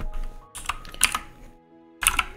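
Computer keyboard keys clicking, a quick cluster of several taps between about half a second and a second in.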